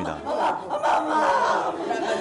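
A woman wailing in grief, with several other mourners' voices crying out and talking over her at once.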